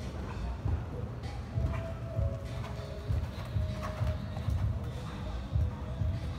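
Hoofbeats of a horse cantering on sand arena footing: a quick, steady run of dull, low thuds, with faint music and voices behind.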